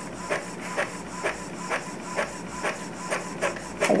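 Epson EcoTank L3150 inkjet printer printing a test page, its print-head carriage shuttling back and forth with a short regular stroke about twice a second as the sheet feeds out.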